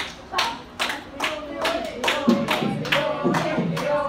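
Small audience clapping in a steady rhythm, about two and a half claps a second. About two seconds in, voices join in, chanting in time with the claps.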